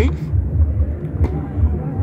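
Low, uneven rumble filling a pause in a man's talk, with one faint click just past the middle.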